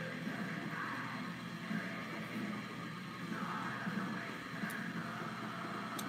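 Faint background music playing steadily in the room.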